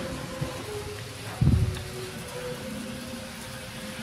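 Faint, steady hum of an HO scale Athearn Genesis SD70M locomotive running around the track, with a short low thump about a second and a half in.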